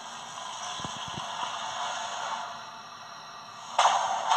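Film trailer soundtrack playing over cinema speakers, heard from the audience seats: a quiet, steady rushing hiss with a few faint soft knocks about a second in, then a sudden loud sound-effect hit just before the end.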